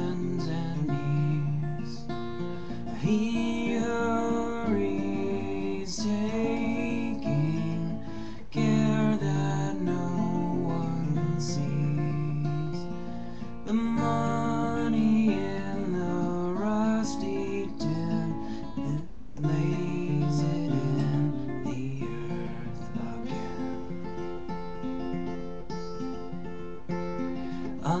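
Acoustic guitar played fingerstyle: a slow chord accompaniment with ringing low bass notes, as an instrumental passage between sung lines of a folk ballad.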